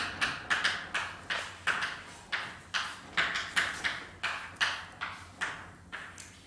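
Chalk writing on a blackboard: a quick, uneven run of short scratchy taps and strokes, about three a second, as each symbol is put down.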